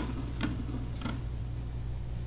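Tabletop tarot Wheel of Fortune spinner spinning down. Its pegged rim ticks a few times, the ticks spreading further apart as the wheel slows.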